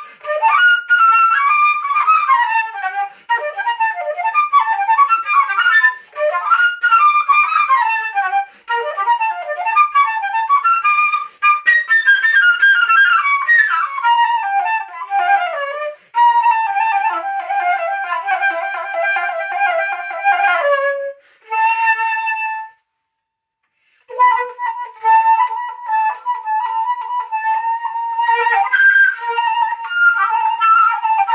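Solo concert flute playing a son calentano from Guerrero: quick runs of notes, then a long wavering note that slides down and breaks off, a short note and a pause of about a second, then repeated notes on one pitch near the end.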